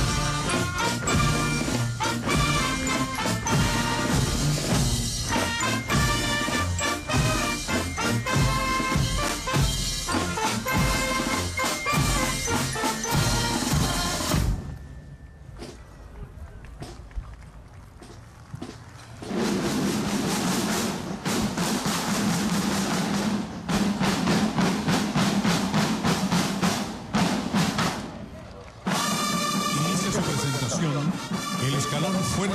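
Military marching band playing a march on brass, snare drums and bass drum. About halfway through the music falls away to a much quieter few seconds, then a loud passage of rapid drum strokes takes over before the full band sound returns near the end.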